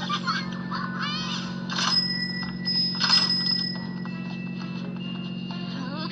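Cartoon episode soundtrack: a brief voice in the first second, then light music with held chime-like tones, over a steady low hum.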